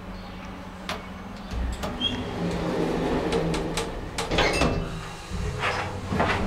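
Verbano-lift in-ground hydraulic passenger lift: a button click about a second in, then the car's sliding door running shut with rattles and clatter, and near the end a louder rumble as the hydraulic drive starts the car moving up.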